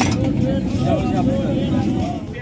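Busy street-market background: a steady low rumble of motor traffic with faint voices talking, and a single sharp click at the very start.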